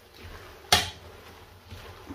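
A utensil knocks once, sharply, against a metal saucepan about three quarters of a second in, while spaghetti is being tossed in the pan; a faint low hum sits underneath.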